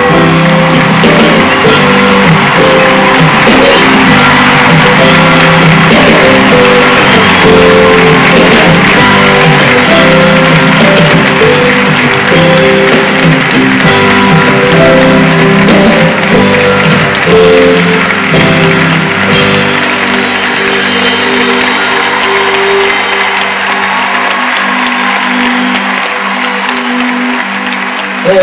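A live band plays an instrumental introduction with held chords, bass and drums, while a large audience applauds and cheers. The applause is strongest in the first half and thins out, and the bass drops away near the end as the song is about to begin.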